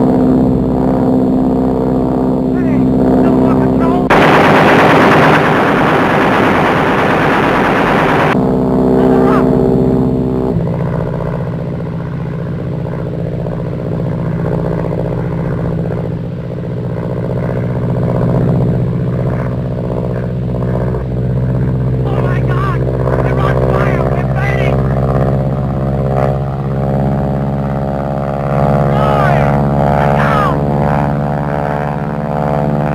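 Film soundtrack of biplane engines droning in flight, with a long, dense burst of machine-gun fire about four seconds in that lasts about four seconds. The engine note shifts about ten seconds in and then slowly rises, with short gun rattles near the end.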